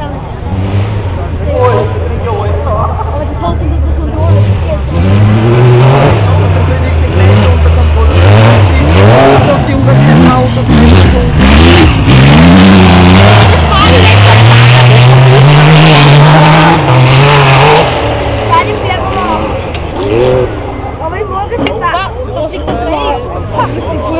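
Racing buggy's engine revving hard and dropping back through gear changes as it slides past close by on a dirt track. It is loudest in the middle and falls away after about 18 s.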